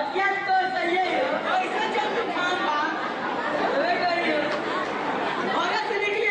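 Speech only: several voices talking over one another, indistinct chatter.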